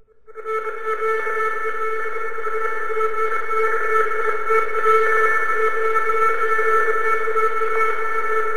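Instrumental post-rock music: a held drone chord of several steady tones swells in from silence within the first second and then sustains evenly.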